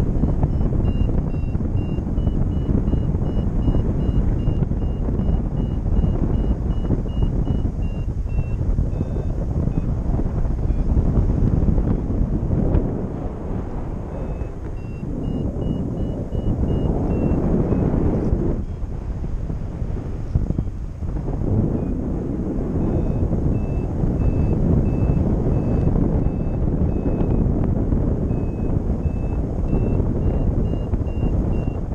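Wind rushing over the microphone of a tandem paraglider in flight, swelling and easing, with a paragliding variometer's rapid high beeps sounding on and off; the beeping signals that the glider is climbing.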